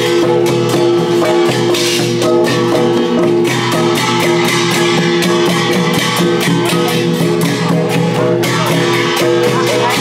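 Traditional temple procession music: long drums and gongs beat a steady rhythm over sustained ringing tones.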